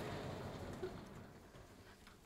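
A sliding blackboard panel rumbling along its track, fading out over the first second or so, leaving faint scattered clicks and rustles.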